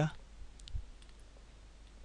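A few faint, sparse clicks and taps from a stylus on a drawing tablet as handwriting is written, over low hiss.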